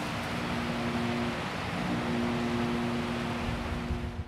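Dark ambient drone: a steady rushing noise under two low held tones, which drop out briefly about a second and a half in and then return.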